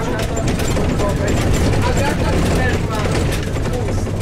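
Jelcz 120M city bus's diesel engine running steadily under way, heard from inside the bus, with frequent small rattles and clicks from the bus body.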